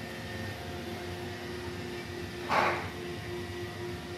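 Roomba robot vacuum running with a steady motor whine, going around in circles. A short, noisy burst breaks in about two and a half seconds in.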